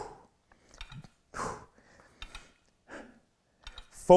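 A man's forceful breaths out, three of them about a second and a half apart, from the effort of a set of seated dumbbell tricep kickbacks. A few faint clicks come between them.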